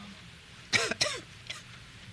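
A man's brief cough about a second in, alongside a spoken 'no'.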